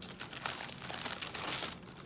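Thin paper pages of a Bible being leafed through, a crisp rustling crinkle that stops near the end.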